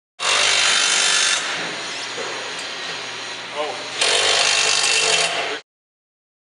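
A handheld power tool driving bolts: a loud burst for about a second, a softer stretch, then another loud burst about four seconds in that cuts off suddenly.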